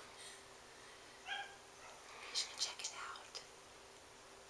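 Faint whispered voices in a quiet room, with one short pitched sound about a second in.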